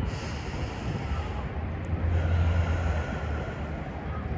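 A slow, deep breath in and out close to the microphone, over a steady low hum that grows louder about halfway through.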